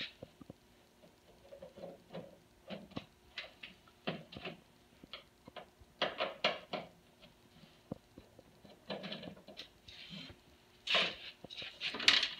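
Screwdriver backing screws out of a photocopier's control panel: faint, irregular small clicks and squeaks of the driver tip and screw turning, with a louder cluster of handling clatter near the end.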